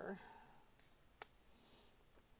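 Near silence, with one sharp click about a second in and a faint rustle soon after, as hands press and smooth a sticker onto a paper planner page.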